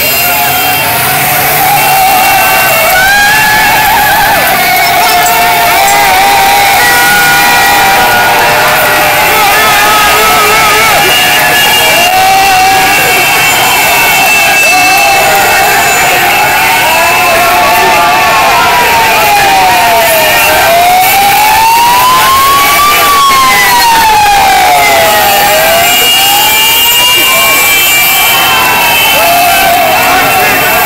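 A large street crowd cheering and shouting as vehicles drive past. From about halfway through, a siren wails slowly up and down, each rise and fall taking about two and a half seconds.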